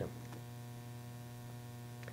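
Steady electrical mains hum: a low buzz with a faint hiss above it.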